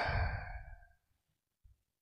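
A man's short questioning 'hah?' trailing off in a breathy exhale that fades out within the first second.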